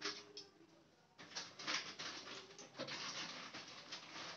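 Hot cooking oil in a kadai crackling and spitting faintly, in irregular bursts that thicken after about a second.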